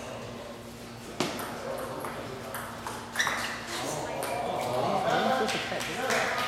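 Celluloid-type table tennis ball struck by rubber-faced paddles and bouncing on the table in a short rally, a few sharp clicks with the loudest about a second in and about three seconds in. Voices talk in the hall over the second half.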